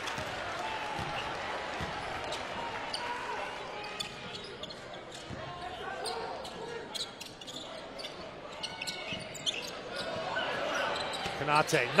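A basketball being dribbled on a hardwood court, with short sharp knocks, over the steady murmur of an arena crowd that grows louder near the end.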